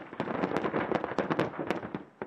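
Military live-fire weapons fire and detonations: about a dozen sharp cracks and bangs in a rapid, irregular series.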